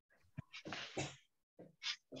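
A person breathing hard after brisk exercise: a few short, breathy exhalations, with a small click just before them.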